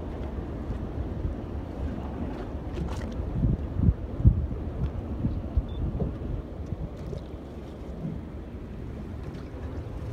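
Wind buffeting the microphone over choppy sea, a steady low rumble with a few louder thumps a little before the middle.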